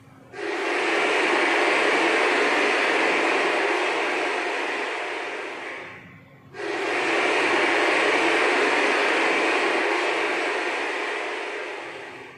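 Dense crowd applause in two bursts of about six seconds each. Each starts suddenly and slowly fades, with a short gap between them.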